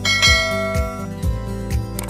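Background music with a steady beat of about two thumps a second. At the start a bright bell chime rings out and fades after about a second: the notification-bell sound effect of a subscribe animation.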